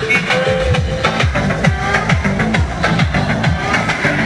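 Loud dance music with a fast, steady beat of falling bass notes, about three a second, under a melody.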